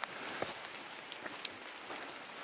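Light rain falling on forest leaves: a faint, steady hiss with a few scattered drop ticks.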